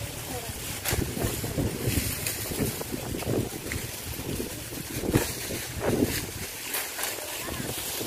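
Bundles of cut sugarcane being carried and tossed onto a pile: dry stalks and leaves rustling, crackling and snapping in irregular bursts, with one sharp crack about a second in, over trampled cane leaves underfoot.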